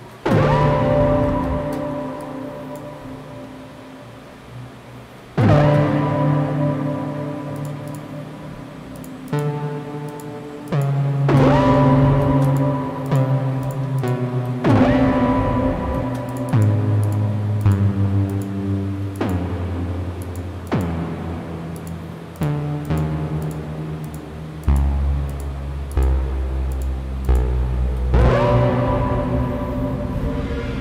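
Electronic music playing back from a software synthesizer: loud pitched notes that start sharply and fade, several with a quick upward pitch sweep at the attack, over a low bass line that steps down to deeper notes in the second half.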